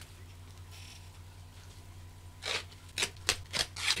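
Hands handling a small plastic aquarium filter: a quiet stretch, then from about two and a half seconds in, a run of rustles and sharp plastic clicks.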